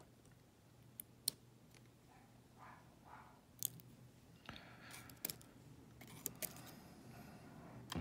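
Faint small metallic clicks and light handling noise from steel tweezers and a brass Euro lock cylinder, as a spring and driver pin are picked out of a pin chamber. Half a dozen sharp, isolated clicks are spread through otherwise quiet handling.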